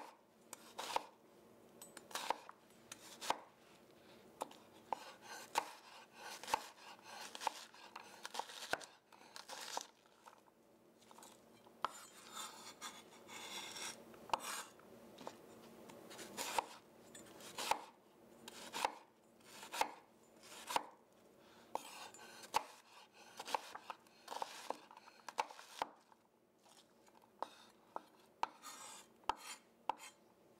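Chef's knife dicing a yellow onion on a wooden cutting board: a quiet, steady string of knife strikes on the board, roughly one or two a second.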